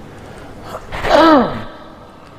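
A man's voice making one short wordless exclamation about a second in, breathy at the start, with a pitch that rises and then falls.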